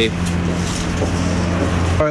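A motor vehicle engine running steadily nearby, a low even hum over road-traffic noise, that stops suddenly at the end.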